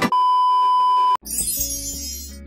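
A loud, steady electronic bleep on one high pitch cuts into the music for about a second and stops abruptly. New music then begins, with a bright glittering shimmer over it.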